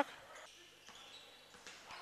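Faint bounces of a basketball being dribbled on a hardwood court, a few thuds over low hall ambience.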